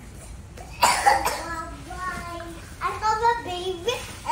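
A young child coughs twice in quick succession about a second in, then vocalises in drawn-out, sing-song tones.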